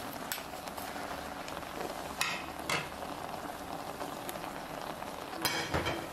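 Pot of cockles cooking over heat: a steady bubbling hiss, with two sharp clinks about two seconds in and a few more near the end.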